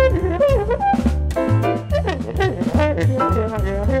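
Jazz quartet playing: a sterling silver trombone solos in sliding, bending notes over double bass, piano and drum kit.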